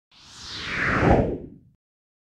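A single whoosh transition sound effect that sweeps downward from a hiss into a low rush. It swells to its loudest just past the middle and fades out well before the end.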